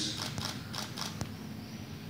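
A pause in speech filled by about half a dozen faint, sharp clicks and creaks in the first second or so, then quiet room tone.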